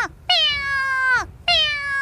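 A woman imitating a cat, giving long meows about a second each, one after another, each held on one pitch and then dropping at the end.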